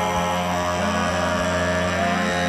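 Live loopstation beatbox performance: layered, looped vocal sounds forming sustained droning tones, with a deep kick sound recurring about once a second.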